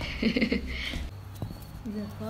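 Handling noise of a phone camera being moved, with light knocks and a click, mixed with brief voice sounds.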